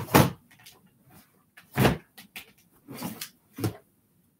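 Four short bumps and knocks of objects being handled and set down, the loudest near the start and about two seconds in.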